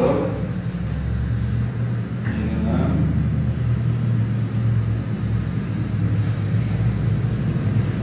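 A low, steady humming rumble, like a motor running, under faint voices in the room.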